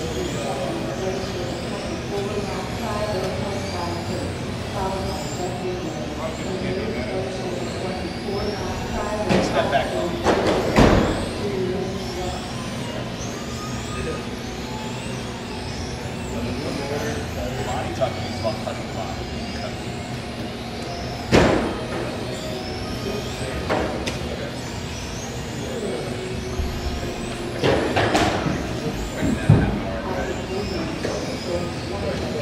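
Electric RC touring cars racing, their motors whining up and down in pitch as they accelerate and brake, repeated over and over. Sharp knocks stand out about ten seconds in, about twenty-one seconds in and near the end, with hall chatter underneath.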